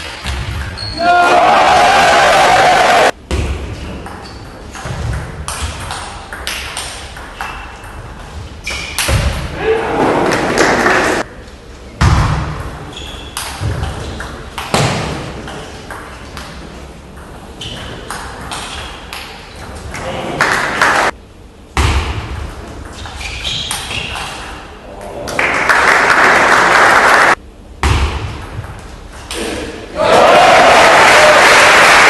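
Table tennis rallies: the celluloid ball clicking off the rackets and the table in quick exchanges in a large hall. Between points there are louder bursts of crowd noise and voices.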